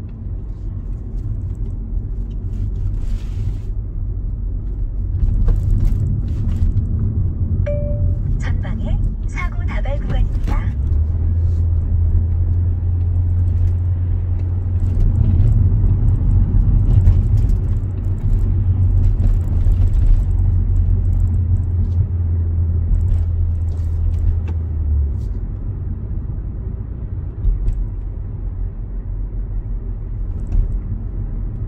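Inside the cabin of a Kia Seltos driving at city speed: a steady low engine and road rumble. A deeper steady drone holds through the middle stretch.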